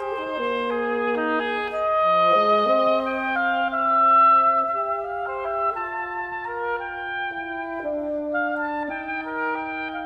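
A reed quintet of oboe, clarinet, saxophone, bass clarinet and bassoon playing contemporary chamber music: several wind voices hold sustained notes and move from pitch to pitch in steps.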